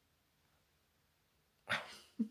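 Near silence, room tone only, broken near the end by one short, sharp burst of sound.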